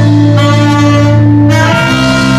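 Live band with saxophones, electric guitar, keyboard and drums playing. It holds a long chord, then moves to a new one with a fuller sound about three-quarters of the way through.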